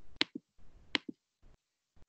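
Two computer mouse clicks about three quarters of a second apart, each a sharp click followed closely by a duller one, heard through a video-call microphone.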